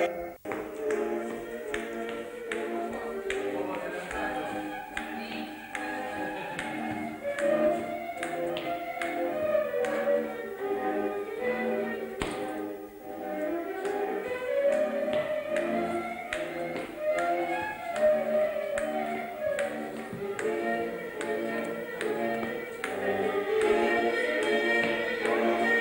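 Transylvanian folk dance music with a fiddle melody over string accompaniment, overlaid by sharp taps and stamps of the dancer's boots on the hall floor in the dance's rhythm. The sound drops out briefly just after the start.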